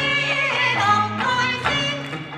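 Kawachi ondo music: electric guitar playing a bending, ornamented melody over a steady beat about twice a second.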